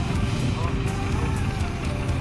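Background music over a steady low rumble, with faint voices.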